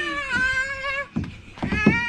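A child's high-pitched squeal held for about a second, then a shorter cry near the end.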